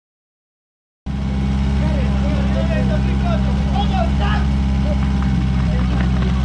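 PS12 portable fire pump with a 1200 cc engine running steadily at high speed, cutting in abruptly about a second in, with voices over it.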